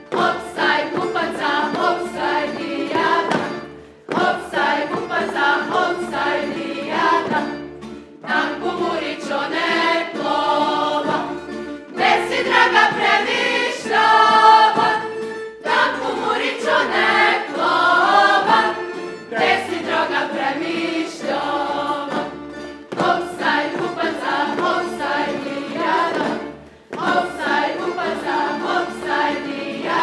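A group of men and women singing a Međimurje folk song in unison in phrases of about four seconds, with short breaks between them, over a tamburica accompaniment with a low, regular beat.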